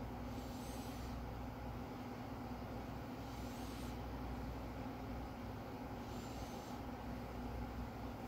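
Steady low hum and hiss of room background noise, with three faint short high whistles spread through it.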